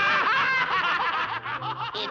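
A cartoon character snickering: a run of voiced laughter lasting almost the whole two seconds, loudest at the start.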